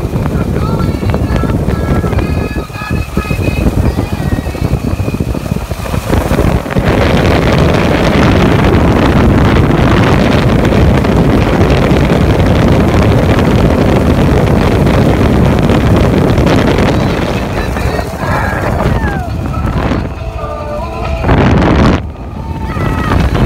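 Jet boat at speed: for the first six seconds music plays over wind and engine noise, then about six seconds in a loud steady rush of engine, wind and water takes over as the boat speeds up. Excited voices of riders come through near the end as spray hits them.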